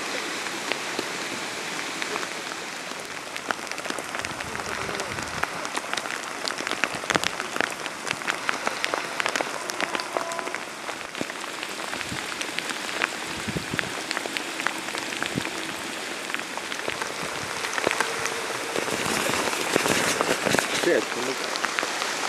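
Steady rain, with many separate drops striking close by as short ticks over the hiss.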